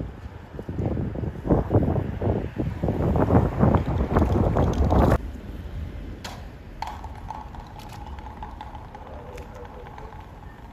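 Wind buffeting the microphone in gusts for about five seconds, cut off suddenly. Then quieter outdoor background with a faint steady tone and a few sharp clicks.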